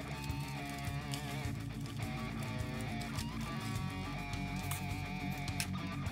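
Background music led by guitar, playing a melody with bending notes over a steady bass line.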